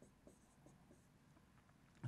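Near silence, with faint light scratching and ticking of a stylus writing by hand on a tablet.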